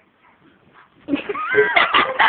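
A girl's high-pitched laughter, breaking out about a second in after a quiet moment, its pitch sliding up and down.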